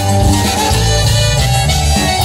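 Live band playing an instrumental passage between sung lines, with a steady bass beat under a held melody line.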